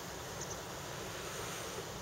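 Steady outdoor ambience: light wind rumbling on the microphone over an even hiss, with two faint high ticks about half a second in.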